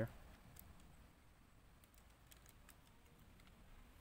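Faint, sparse clicks of plastic LEGO Bionicle parts being handled as a Hero Factory armor piece is pressed onto a peg.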